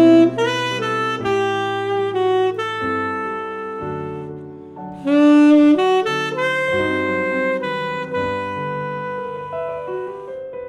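Saxophone and piano duo playing jazz: the saxophone carries the melody in long held notes over piano chords, swelling loudest at the start and again about five seconds in.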